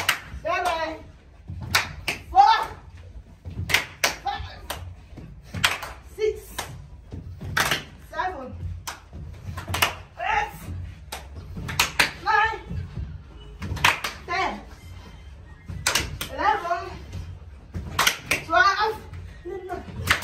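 Women's voices calling out in short bursts every second or two, over a run of sharp smacks and claps.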